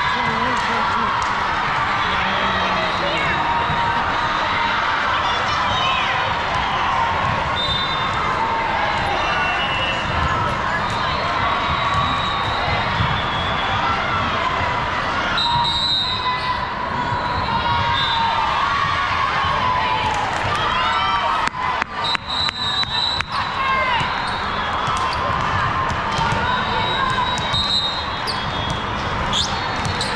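Indoor volleyball match: constant chatter of players' and spectators' voices, with the volleyball being hit and bouncing off the court. Short high squeaks come and go, and a cluster of sharp knocks falls about two-thirds of the way through.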